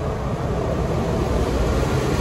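Steady background hum with a low rumble, even throughout, with no distinct clicks or knocks.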